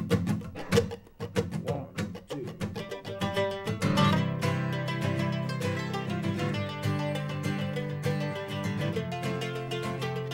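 An acoustic band starts a song in a folk arrangement. A guitar plays short, sharp plucked notes under a spoken "one, two" count-in, then sustained chords and a low bass line come in about four seconds in.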